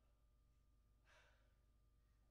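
Near silence: hall room tone with a low hum, and one short, faint, breathy hiss about a second in.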